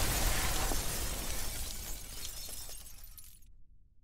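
Shattering sound effect of stone breaking up, with debris crumbling and scattering. It dies away steadily, and its hiss cuts off suddenly about three and a half seconds in, leaving a faint low rumble that fades out.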